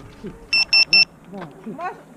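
Three short, identical high-pitched electronic beeps in quick succession, from a cinewhoop FPV drone sitting on the ground. A man's voice follows.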